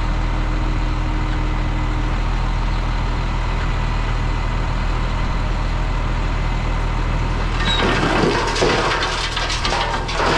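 Heavy diesel engine running steadily. About three quarters of the way in, a louder crunching, crackling rush of moving clay begins over it.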